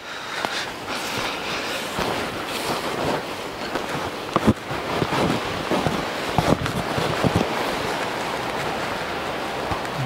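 Steady rushing wind noise on the action camera's microphone, mixed with footsteps and the rustle of dry grass and brush while walking through undergrowth, with a few sharper snaps about four and a half and six and a half seconds in.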